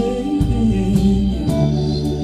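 Live band playing between sung lines: sustained organ chords over bass notes, with guitar and a hand drum struck now and then.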